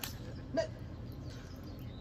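Low steady outdoor background with one brief vocal sound about half a second in.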